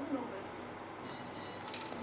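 Small plastic Lego pieces being handled and pulled apart, with a quick run of sharp clicks near the end.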